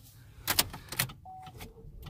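Car key being turned in the ignition of a 2017 Chevy Cruze hatchback: a few sharp mechanical clicks in the first second, then a faint steady electronic tone as the ignition switches on, just before the engine starts.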